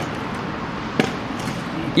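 Stunt scooter wheels rolling over rough concrete, a steady grinding rumble, with one sharp knock about a second in as the scooter bumps over the surface.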